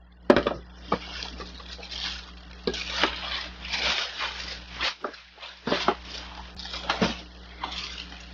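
A plastic shopping bag rustling and crinkling in the hands, irregular throughout, with a few sharp clicks and knocks as items are handled.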